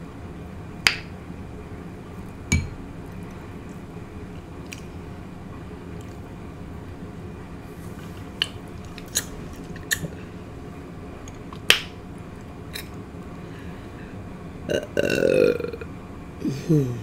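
Close-miked eating sounds of fried fish and shrimp being chewed: scattered sharp mouth clicks and crunches every second or two, then a short throaty vocal sound near the end.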